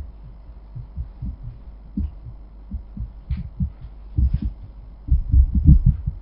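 Irregular low thumps and bumps, a few each second, coming thick and loudest near the end.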